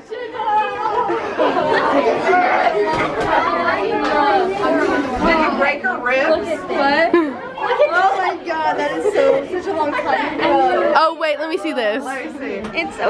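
Crowd chatter: many girls' voices talking over each other at once in a large gym hall.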